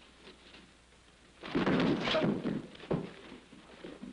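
Karate knife-defence demonstration on a gym floor: a loud burst of scuffling and impact lasting about a second starts about a second and a half in, followed by a single sharp smack about a second later.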